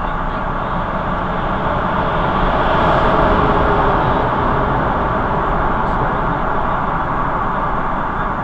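Steady road-traffic noise echoing in a road tunnel, swelling a little about three seconds in.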